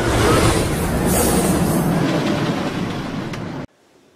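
Roller coaster train running along its track, loud and steady, cutting off suddenly near the end.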